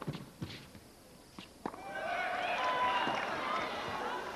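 A tennis ball struck sharply by rackets and bouncing on an indoor hard court, a few separate pops in the first second and a half. Then a spread of many voices from the spectators rises about halfway through.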